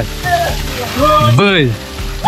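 A person's voice giving one short wordless call that rises then falls in pitch, over a steady background hiss.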